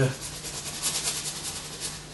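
Bristle brush scrubbing oil paint onto canvas in quick, repeated strokes, about four or five swishes a second.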